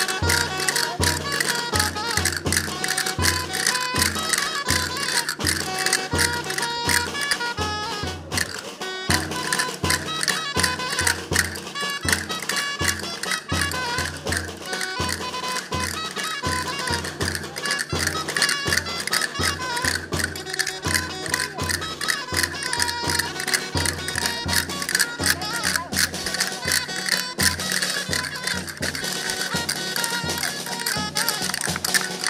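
Traditional Leonese folk dance music played live: a melody carried over a steady, quick drum beat.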